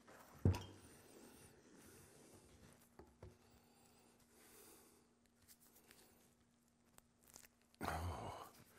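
A single sharp knock about half a second in, from a wooden spoon against a small pot of melted lure, then a few light handling clicks. A faint steady hum sits under the quiet stretch that follows.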